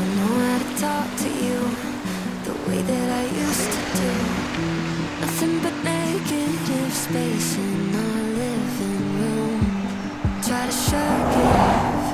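Background music: an instrumental stretch of a pop song, a stepped melody over a bass line, with a rushing swell of noise building near the end.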